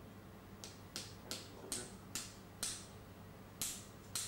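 A small metal surgical mallet strikes the end of a metal dilator with a tube pusher, driving it into the lumbar disc space. There are seven light, sharp metallic taps, starting about half a second in and coming about every half second, with a longer pause before the last. The dilator has to be hammered in because the disc is somewhat difficult to penetrate.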